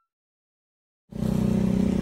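Silence for about a second, then outdoor background noise cuts in abruptly with a steady low engine hum under it.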